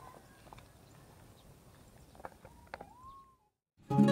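Faint open-air ambience with a few soft ticks, like footsteps on dry grass. Near the end comes one short whistle-like tone that rises and then levels off, followed by a brief cut to dead silence.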